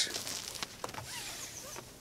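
Climbing rope sliding through hands and over a jacket as loops are laid over the shoulders: soft rustling, strongest at the start, with a few faint taps.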